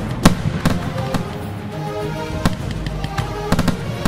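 Fireworks going off in a string of sharp bangs over music with held notes. The loudest bang comes about a quarter second in, with a quick cluster of bangs near the end.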